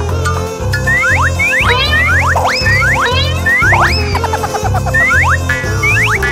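Upbeat children's background music with a bass beat pulsing about twice a second, overlaid with many quick cartoon-style boing sound effects that swoop up and down in pitch.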